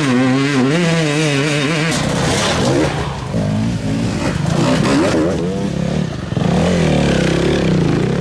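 Enduro dirt bike engines revving hard on a rough trail, the pitch rising and falling with each twist of the throttle. The sound changes about two seconds in, and a bike is louder and fuller near the end as it passes close by.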